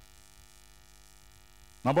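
Faint steady electrical hum with a buzzy stack of evenly spaced overtones, heard in a pause in speech; a man's voice comes back in near the end.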